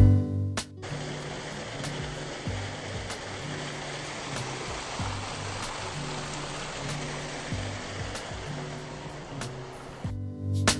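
A small waterfall spilling over stacked rocks makes a steady rush of falling water. It starts just under a second in, as the louder music drops away. Quiet guitar music with a light regular beat carries on underneath.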